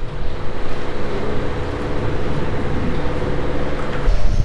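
Steady low rumble with a faint, even hum throughout, without breaks or distinct knocks.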